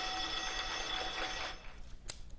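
Small hanging brass gong ringing on after mallet strikes, several steady overtones that die away about one and a half seconds in, over light hand-clapping.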